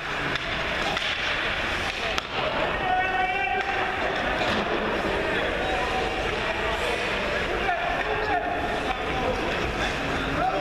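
Ice-rink crowd noise during a youth hockey game: spectators talking and calling out over a steady haze of arena sound, with one high shout about three seconds in and a sharp knock just after two seconds.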